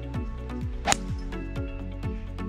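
Background music with a steady beat. About a second in, a single sharp click of a two-iron striking a golf ball off the tee.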